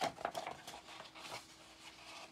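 Sheets of paper rustling and sliding against each other as they are handled and lined up, with a few short crackles in the first second.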